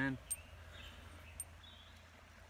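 Two faint clicks as a small reel is slid into the groove of a pen fishing pole's reel seat, over a quiet background with a low steady hum.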